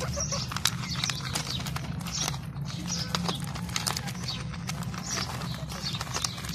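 Several rabbits chewing carrot pieces: a fast, irregular run of crisp crunching clicks, over a steady low hum.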